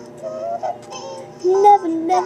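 A girl singing a slow memorial song, her voice processed with effects, with gliding, held notes that grow louder in the second half.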